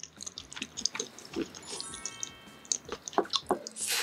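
Close-miked wet chewing of soft food, boiled egg yolk in spicy tteokbokki sauce, with quick lip smacks and mouth clicks. A short chime-like tone sounds about halfway through.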